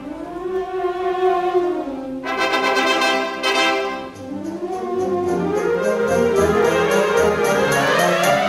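Symphonic wind band playing a concert pasodoble, brass to the fore. There is a short dip about halfway, after which the full band plays on over a steady beat.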